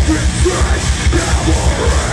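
Hardcore band playing live at full volume: heavily distorted guitars and bass over rapid, pounding kick-drum hits, with screamed vocals.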